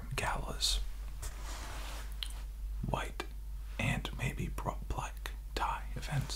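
A man whispering close to the microphone in short phrases, with a soft rustle between them about a second in.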